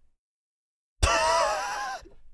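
Near silence, then about a second in a cartoon voice suddenly cries out in pain, a wavering yell that fades over about a second: a character who has just kicked a boulder and hurt his foot.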